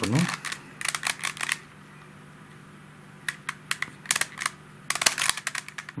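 Plastic Helicopter Cube puzzle clicking as its edges are turned by hand. There are two runs of quick clicks, the first in the opening second and a half and the second from about three seconds in until shortly before the end, with a brief pause between.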